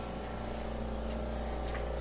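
Steady low hum with faint steady tones and hiss, the background noise of a recording room, with no distinct event.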